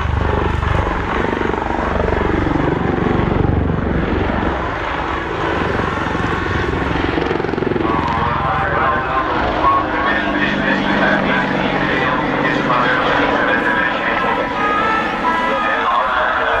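AH-64D Apache attack helicopter flying a display overhead. Its rotor beat is heaviest in the first few seconds, and its engine and rotor pitch sweep up and down as it manoeuvres.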